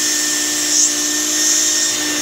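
Wet/dry shop vac running steadily, a hum with a high whine over hissing airflow, its hose end held against a nostril to suck out mucus. The hiss of air at the nozzle swells briefly a little under halfway through and again near the end.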